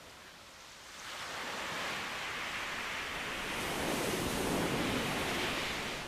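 Sea waves washing onto a shingle beach: a surge of surf noise that builds about a second in, peaks a few seconds later and draws back near the end.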